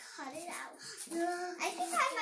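A young girl's voice singing a wordless tune, holding one note for about half a second in the second half.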